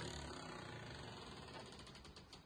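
Quiet background hiss with no distinct events, fading slightly.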